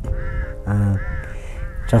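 A bird calling in the background, three short arched calls, with a man's brief hesitant "eh" between the first and second.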